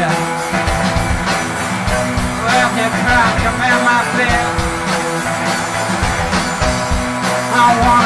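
Live rock band playing electric guitars, bass guitar and drums over a steady beat.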